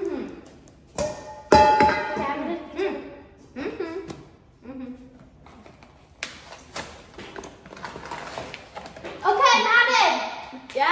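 Children's voices mixed with music, with a sharp knock about a second and a half in.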